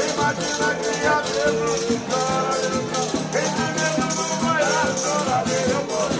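Traditional Brazilian ciranda played live: several men singing together over strummed acoustic guitars, a small guitar and a hand-played frame drum, with a steady rattling beat running through.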